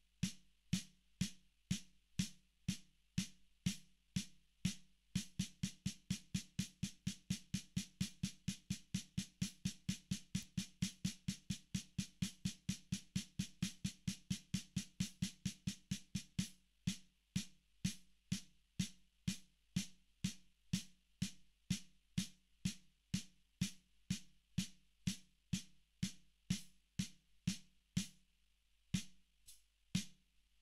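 Snare drum struck with sticks in an even single-stroke triplet rhythm, played slowly. The strokes come faster from about five seconds in, then drop back to the slower pace a little past halfway.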